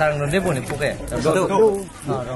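A man's voice speaking, with no other sound standing out.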